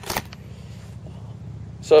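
A single sharp click just after the start, then low, steady background noise, and a man's voice beginning right at the end.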